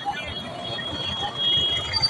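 Busy street ambience: indistinct voices of people nearby over a low, steady rumble, with a thin, steady high tone through the middle.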